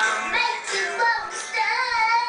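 A high-pitched voice singing over recorded music. A long note is held from about halfway through.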